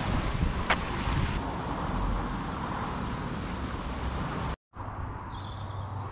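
Wind buffeting the microphone, a steady rushing noise, with one sharp click less than a second in. After an abrupt cut near the end, the wind is quieter, with a low steady hum and a few faint bird chirps.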